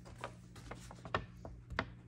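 A sheet of paper being handled and unfolded, giving a few short crackles and clicks, the sharpest just past a second in and near the end.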